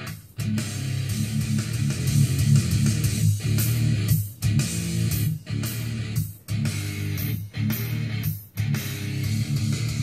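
Guitar-driven rock music with electric guitar and bass, played back through a car stereo's speaker. It breaks off briefly about once a second.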